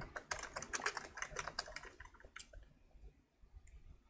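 Typing on a computer keyboard: a quick run of key clicks over the first two seconds, then a few scattered keystrokes.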